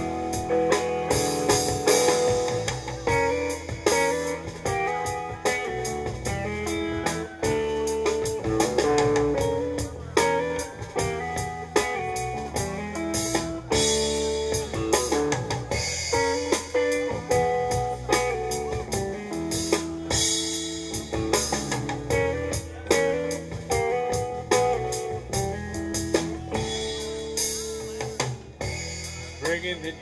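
Live blues-rock band playing an instrumental passage: electric guitar picking out a melodic line over a drum kit and a second guitar.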